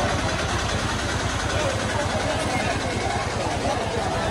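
A motor vehicle engine running close by, with a fast, even throb, under the chatter of a crowd.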